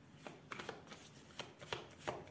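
Faint shuffling of a deck of tarot cards by hand, heard as a loose run of short card snaps and rustles starting about half a second in.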